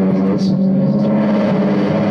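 Experimental electronic drone from a delay effects pedal played through small amplifiers: a steady, loud low tone with layered overtones.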